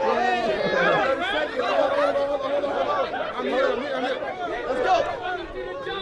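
A crowd of spectators talking and shouting over one another, with several voices at once and no single voice standing out.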